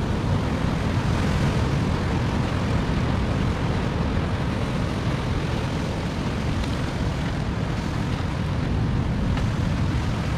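Steady wind rumbling on the microphone over the wash of surf breaking on rocks.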